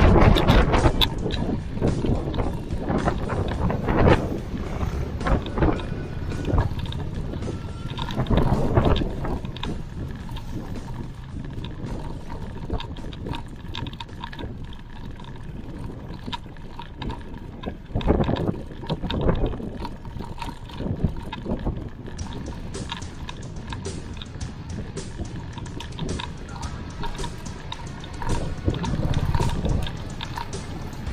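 Wind buffeting the microphone of a handlebar-mounted camera on a moving mountain bike, mixed with road noise, rising in several gusts.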